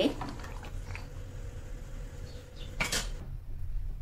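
Pot of macaroni boiling on a gas stove, a low steady rumble, while a plastic ladle stirs in the aluminium pot. A single sharp knock comes about three seconds in.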